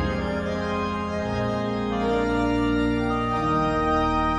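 Organ playing slow, held chords at the close of a hymn; the chords change a few times and there is no singing.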